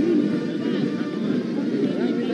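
Indistinct voices of several people talking at once over a steady low rumble.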